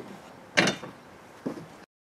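Two short scuffing, handling noises as a person moves off: a louder one about half a second in and a weaker one near the end. The sound then cuts off suddenly.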